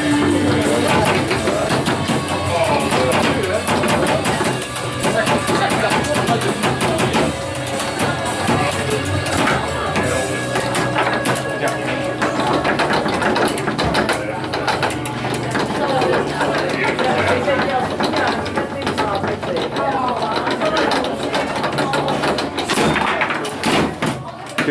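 Foosball table in play: ball strikes and rod clacks knocking in a fast, irregular run, over background music and indistinct chatter.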